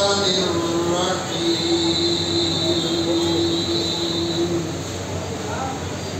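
A man's voice in melodic Quran recitation over a microphone, holding one long steady note for about four seconds before it ends.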